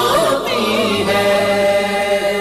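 Unaccompanied devotional chanting: a voice sings long held notes that glide slowly between pitches, in the manner of an Urdu naat or nasheed.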